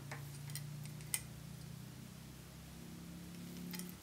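Faint small clicks of hackle pliers and a thread bobbin being handled as a quill is wound onto a fly-tying hook, a few scattered ticks over a faint low hum.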